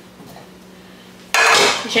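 A granite-coated frying pan set down onto a glass tabletop about a second and a half in: one short, sharp clatter.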